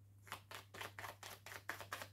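A deck of tarot cards being shuffled by hand: a quick run of soft card flicks, about six a second, starting shortly after the beginning.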